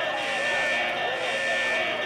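A steady electric buzzer tone sounding continuously over the chatter of many voices at once, like an audience murmuring.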